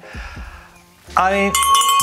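A bell struck once about a second and a half in, ringing on with a steady tone. A man says a couple of words just before it.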